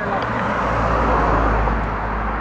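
A box truck passing close by on the road: a steady rush of engine and tyre noise with a deep rumble that swells about half a second in, peaks near the middle and eases off toward the end.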